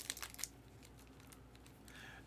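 Foil card wrapper crinkling faintly under the fingers, a few light crackles in the first half second, then near silence.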